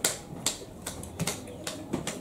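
A series of short, sharp clicks, about two a second.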